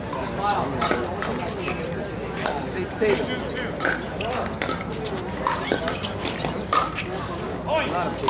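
Pickleball paddles striking the hard plastic ball: several sharp pops a few seconds apart, the loudest about three seconds in and near the end, over steady background chatter.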